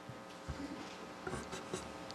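Faint rustling of papers handled at a table microphone, with a few light knocks.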